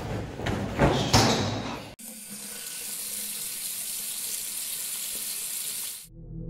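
Several sharp knocks, then after a sudden cut about two seconds in, a restroom sink tap running with a steady hiss of water.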